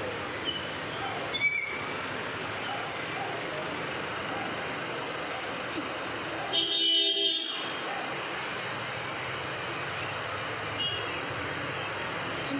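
Steady street traffic noise, with a vehicle horn honking once for about a second, a little past the middle.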